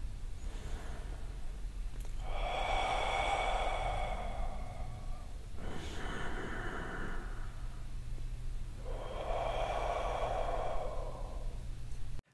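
A man doing ujjayi (ocean) breathing: slow, audible breaths drawn past a slightly contracted throat, a soft whispered 'huhh' that sounds like waves. There are two long breaths, about two and nine seconds in, with a fainter one between them, over a steady low hum.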